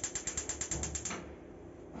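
Gas cooker's electric spark igniter clicking rapidly, about ten clicks a second, as a burner knob is held to light it; the clicking stops about a second in.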